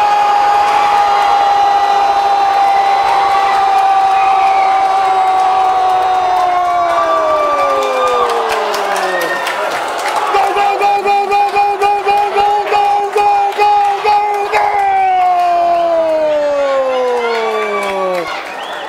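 Portuguese-language football commentator's drawn-out goal cry. One high held note lasts about seven seconds and then slides down in pitch. A second held note with a fast, even warble follows and falls away near the end.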